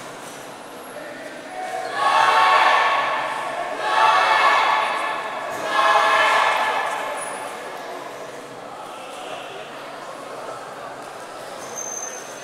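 A man's voice over a public-address system, three loud phrases about two, four and six seconds in, echoing in the hall.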